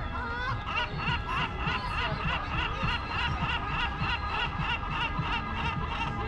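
A rapid string of repeated laughing calls, about three or four notes a second, starting about a second in and stopping near the end.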